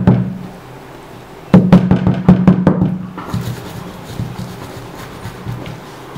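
A quick run of sharp knocks, several a second, over a low steady ringing tone, starting about a second and a half in and lasting about a second and a half, followed by fainter scattered clicks.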